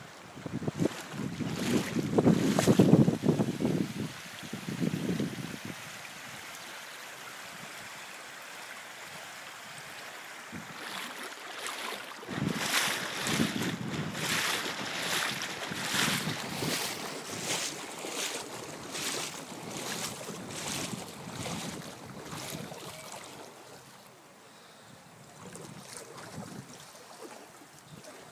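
Wind buffeting the phone's microphone in heavy low gusts, loudest about two to four seconds in, over a steady outdoor rush. In the second half comes a run of short crackling bursts, about one a second.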